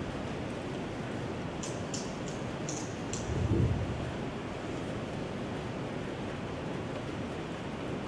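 Steady hiss of room noise, with a few faint short clicks and a dull low thump about three and a half seconds in.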